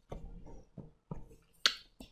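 A few sharp, separate clicks and taps, the loudest near the end followed by a short hiss, typical of handling a stylus or device at a desk.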